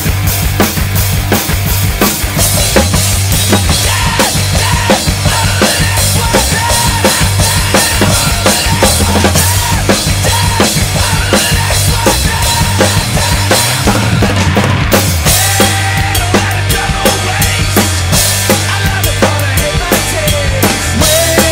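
Sonor acoustic drum kit with Fame cymbals played hard in a driving rock beat, with snare and bass drum under crashing cymbals, over a rock backing track with electric guitars. The cymbals drop out briefly about two-thirds of the way through.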